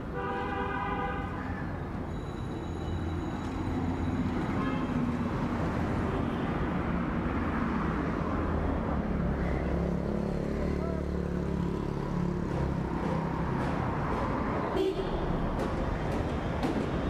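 Street traffic: a vehicle horn sounds once for nearly two seconds at the start, then a steady low rumble of passing engines that grows louder through the middle, with a few sharp clicks near the end.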